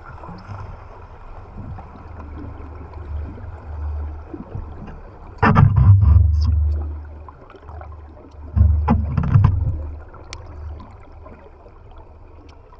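Underwater sound picked up by a camera rig moving through water: a steady low rumble. Twice, about five and a half and eight and a half seconds in, a loud rush of water noise lasts a second or so.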